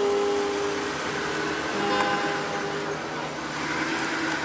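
Cars driving past close by on a street, a steady rush of engine and tyre noise, with sustained, held notes of music in the background.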